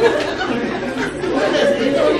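Indistinct chatter: several voices talking over one another at once in a room.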